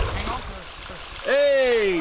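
Water splashing and running off a large catfish as it is hauled by hand out of shallow lake water. Near the end a man lets out a long, loud "Oh" that falls in pitch.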